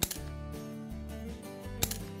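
Steel carabiners clicking against a climbing harness's belay loop as they are clipped on: a sharp metallic click at the start and another near the end, over background music.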